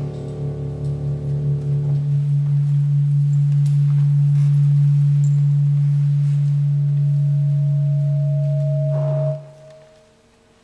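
The last chord of the music dies away, leaving a single low tone held for about nine seconds, which then cuts off suddenly near the end.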